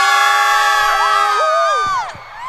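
Several women's voices shouting one long, loud, held cry together into microphones at a steady pitch, with more voices joining higher about a second in before it cuts off.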